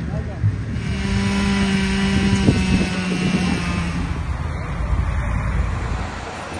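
A vehicle engine running with a steady hum for a few seconds over outdoor street noise, with indistinct voices.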